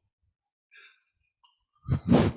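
A man's sigh, close on a headset microphone: quiet at first, then a loud exhale near the end.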